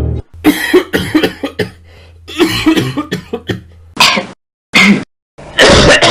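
A person coughing and clearing the throat in a string of short, irregular bursts, over a steady low hum that stops about four seconds in.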